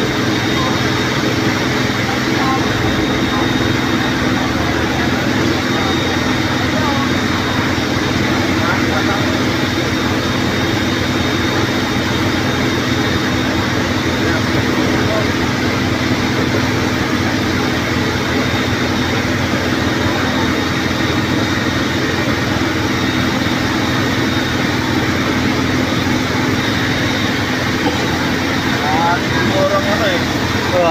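Fire truck engine running steadily at a constant pitch, under the chatter of a crowd.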